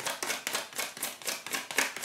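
A deck of tarot cards being shuffled by hand, the cards clacking together in a quick even run of about seven clicks a second.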